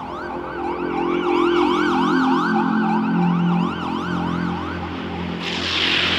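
Spacesynth music: a synthesizer tone gliding up and down about three times a second, like a siren, over sustained low synth chords. Near the end comes a rushing white-noise sweep that leads into the next part of the track.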